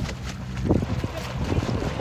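Wind rumbling on the microphone over a DTRC E51 electric RC catamaran running slowly through the water, its wake hissing behind it; a gust swells about two-thirds of a second in.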